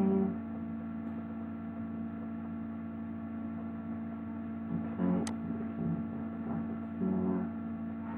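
Steady electrical mains hum with several overtones, picked up by the recording microphone, with a few brief low blips and one sharp click about five seconds in.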